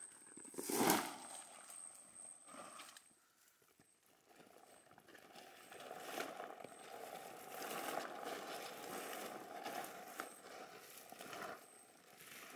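Rustling crash of harvested açaí palm fruit bunches set down on dry leaf litter, about a second in, with a few lighter rustles after it. After a brief dead silence, steady faint forest background with a thin steady hum.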